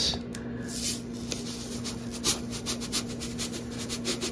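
Dry breadcrumbs being shaken out of their container onto ricotta in a bowl: a light, scratchy rustle made of many small ticks, over a steady low hum.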